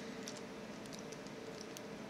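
Faint, scattered ticks of a steel hook pick working the pins inside a six-pin Euro cylinder lock under tension.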